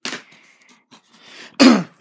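A single short cough from a person about one and a half seconds in, preceded by a brief rustle.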